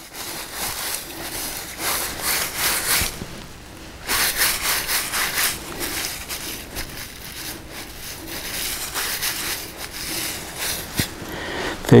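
A gloved hand being scrubbed back and forth in wet grass to wipe it clean: a rough rustling and scraping in uneven strokes, strongest in a stretch from about half a second in and again from about four seconds.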